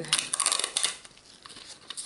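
Brief rustling, crinkling handling noise lasting about a second as a jelly nail stamper is cleaned.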